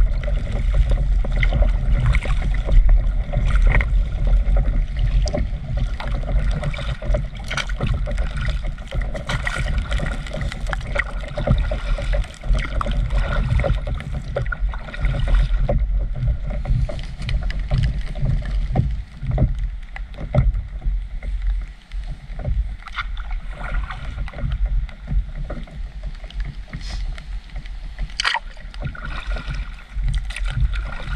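Water lapping and splashing against the nose of an inflatable stand-up paddleboard as it glides along, heard close up from a camera on the board, over a continuous low rumble and scattered small ticks.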